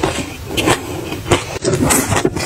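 A person chewing a mouthful of crunchy food close to the microphone: an irregular run of crackling crunches.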